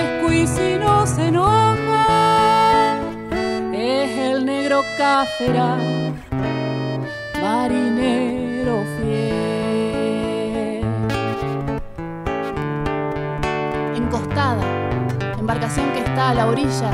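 Instrumental interlude of a litoral folk song: nylon-string acoustic guitar playing with accordion, over steady bass notes, while a sustained melody line with slides and vibrato rides above.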